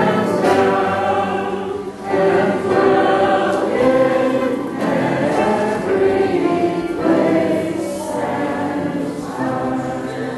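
Many voices singing a hymn together in sustained phrases, with a short break about two seconds in.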